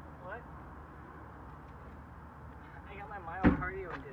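A single loud thump about three and a half seconds in, with a short burst of voice around it, over low steady background noise.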